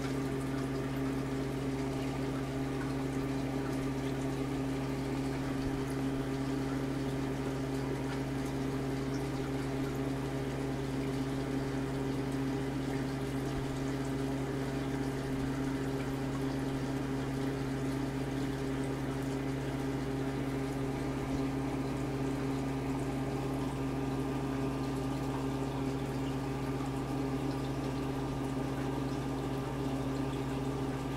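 Aquarium air pump and bubbler running: a steady hum with the gurgle of bubbling water.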